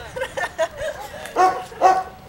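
A dog barking twice in quick succession near the end, after a few softer, shorter sounds.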